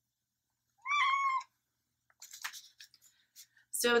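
A house cat meows once, a single short call about a second in. Faint rustling and clicking follow later on.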